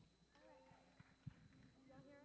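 Near silence: hushed room tone with faint, distant voices and two soft clicks about a second in.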